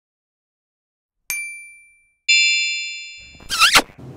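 Intro sound effect of two bright chime strikes, the second louder and ringing longer, followed by a short warbling sweep just before the end.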